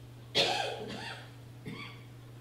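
A single loud cough about a third of a second in, then a fainter short throat sound near the end.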